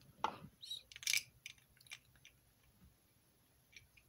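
Hard plastic Bionicle-style building parts clicking as they are handled: a few sharp clicks in the first second and a half, the loudest about a second in, then quiet apart from one faint click near the end.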